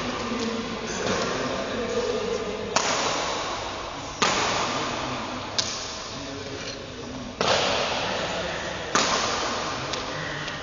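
Badminton rally: a racket strikes the shuttlecock five times, sharp hits about a second and a half apart, each echoing on in a large hall.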